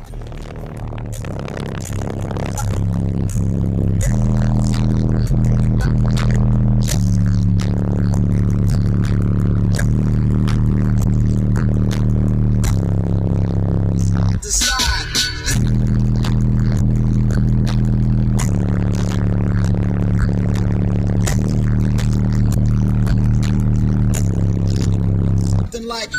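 Music with a heavy, repeating bass line, played loud through a car audio system with two Sundown ZV4 12-inch subwoofers and heard inside the cabin. About halfway through, the music drops out for a second under a scraping, handling-like noise, then the bass line resumes.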